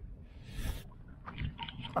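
Gusty wind rumbling unevenly on a handheld camera's microphone, with a short hiss about half a second in and a few faint soft knocks.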